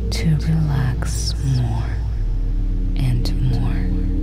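A soft whispered voice over ambient sleep music, with steady low drone tones underneath.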